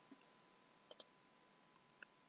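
Near silence, broken by two faint clicks in quick succession about a second in, from a computer mouse button.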